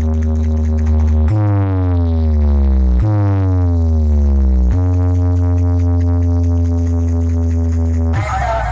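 Bass-heavy electronic DJ track of the kind played in sound-box competitions. A loud, deep bass note holds steady, then sweeps downward in pitch twice, each fall lasting under two seconds, starting about a second in, before settling back to the steady bass note.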